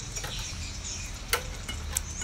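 A bonsai pot being turned by hand on its stand, giving two short sharp clicks, one a little past halfway and one near the end, over a steady low hum.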